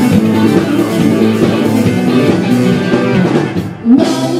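Live rock band playing an instrumental passage: electric guitar, bass guitar and drum kit. Near the end the cymbals drop out and a short rising slide leads into a loud accented hit.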